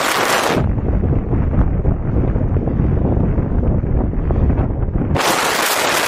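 Wind rushing over the microphone of a phone filming from a moving motorcycle: a heavy, steady low rumble. A brighter hiss-like noise sits at the very start and cuts back in sharply about five seconds in.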